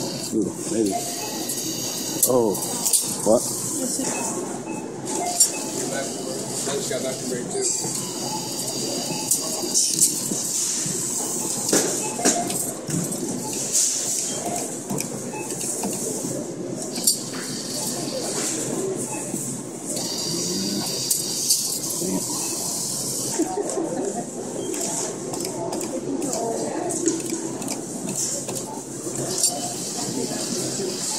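Arcade ambience: indistinct voices of other people mixed with electronic game sounds, with scattered clicks.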